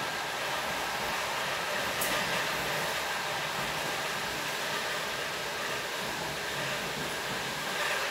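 Steady running noise of a moving passenger train heard from inside the carriage: an even rumble and hiss of the wheels on the track.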